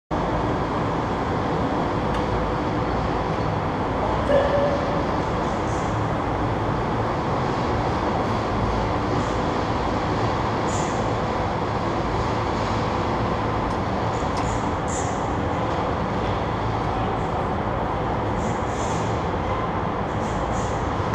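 Steady low rumbling hum of a large indoor karting hall, heard from a go-kart parked in the pit lane, with a faint steady tone through it. A single short knock comes about four seconds in.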